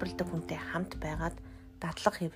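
A person speaking in tongues (glossolalia): rapid, repeated syllables that stop about halfway through.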